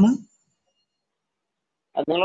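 Speech over an online audio-room call: a short voiced fragment right at the start, then dead silence, then a voice starting again at the very end.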